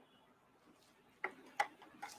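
Two faint short clicks a little past halfway, about a third of a second apart, over quiet room tone.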